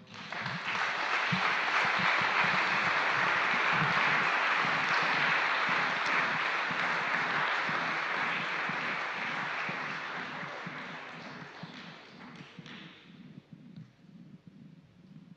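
Audience applause that starts suddenly, holds strong for several seconds and then gradually dies away near the end.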